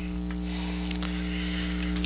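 Steady electrical mains hum, a low buzzing drone that holds unchanged throughout.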